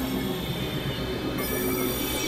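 Dense layered experimental electronic mix: many steady droning tones over a rumbling low end. A band of high hiss and tones grows louder about 1.4 s in.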